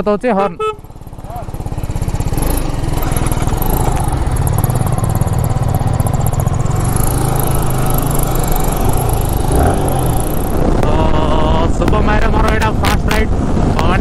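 Yamaha sport motorcycle engine pulling away from a standstill and accelerating hard through the gears to highway speed, the engine note rising and dropping with each shift. Wind noise builds as the speed climbs.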